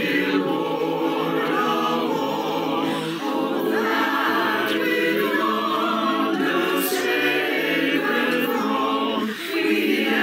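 Virtual choir of mixed men's and women's voices singing together, held phrases with short breaks about three seconds in and near the end.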